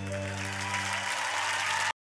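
An audience applauding and growing louder over the band's final held chord. Both cut off abruptly just before the end.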